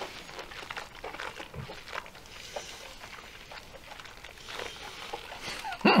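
Quiet mouth sounds of whisky tasting: sipping, lip smacks and breaths, heard as soft, irregular clicks and short hisses.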